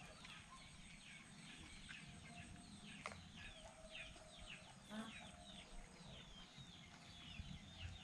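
Faint bird chirping: a steady run of short, quick, falling chirps, a couple a second.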